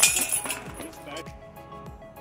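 A disc striking the hanging steel chains of a disc golf basket: a sudden loud jangle of chains that fades out within about a second as the disc drops into the basket.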